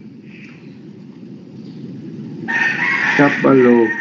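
A loud, drawn-out high call starts suddenly about two and a half seconds in and is held to the end, over low steady background noise.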